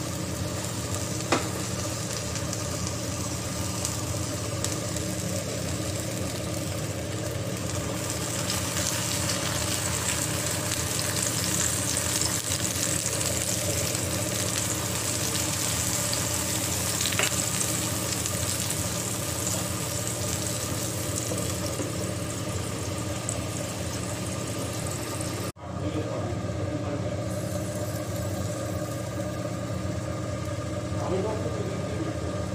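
A vegetable omelette frying in oil in a non-stick pan: a steady sizzle, with a steady low hum beneath it. The sound drops out briefly a few seconds before the end.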